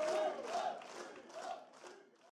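Concert crowd shouting a short call in unison, repeated about twice a second and fading out near the end.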